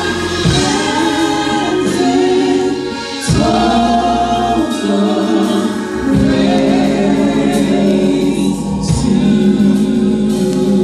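Gospel praise team of several singers on microphones singing a slow worship song in harmony, over sustained low chords that change every second or two.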